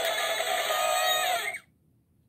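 Power Rangers Dino Fury Morpher toy playing a short musical sound effect from its small built-in speaker as its red button is pressed, lasting about a second and a half and then cutting off suddenly.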